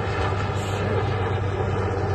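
Helicopter passing close overhead, a steady deep drone of its rotor and engine.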